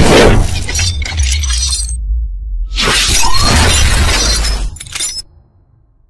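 Cinematic intro sound effects: two loud crashing, glass-shattering hits with deep booming bass, about three seconds apart, fading away about five seconds in.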